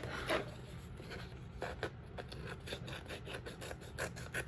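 Paper being handled and trimmed with scissors: soft rustling with a few short, light snips or clicks scattered through.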